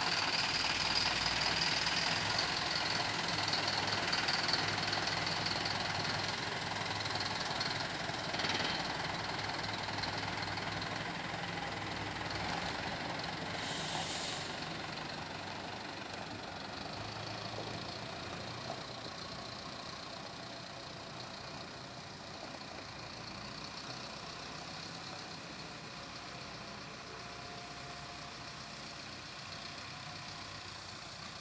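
Comil Piá microbus's diesel engine running as the bus drives and pulls away, its sound slowly fading. A short hiss comes about fourteen seconds in.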